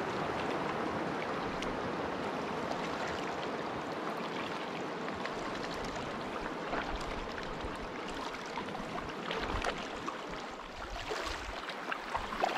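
Steady rush of water around a kayak on a shallow river, broken by the short splashes of paddle blades dipping in and out, more of them near the end.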